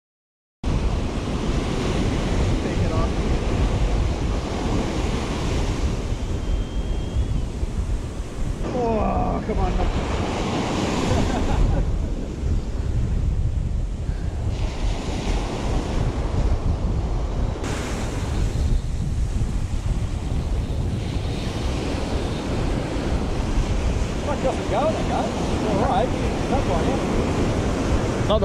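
Ocean surf washing up a beach, with heavy wind buffeting the microphone. It starts abruptly after a moment of silence. Faint voices come through briefly, once around the middle and again near the end.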